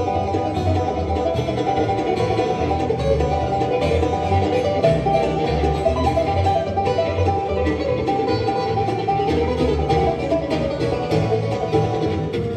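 Live acoustic bluegrass band playing an instrumental: rapid picked banjo over strummed acoustic guitar and a steady upright bass line.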